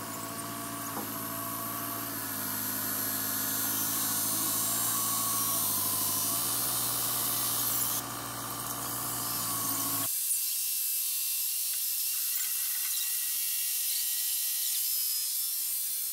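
Compact tractor running with a steady whine, its pitch stepping up slightly twice while the front loader works. The sound cuts off abruptly about ten seconds in, leaving only a faint high hiss.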